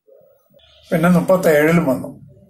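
An elderly man's voice speaking one short phrase about a second in, otherwise only faint background.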